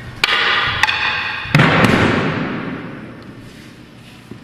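Steel sai clashing against a wooden bo staff four times, each hit ringing, the last two close together and the loudest, with the ring dying away in a large echoing hall.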